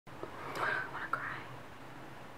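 A woman whispering softly for about a second, with a brief click partway through.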